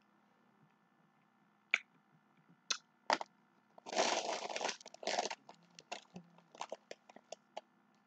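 Crackling and crunching handling noise close to the microphone: three sharp cracks, then about a second of dense crackling around four seconds in, followed by a run of small clicks that stop near the end.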